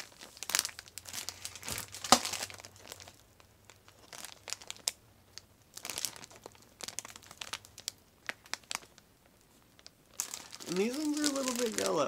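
Thin plastic filter-patch bags crinkling and crackling as petri dishes sealed inside them are handled and turned over, in irregular bursts with the loudest crackle about two seconds in.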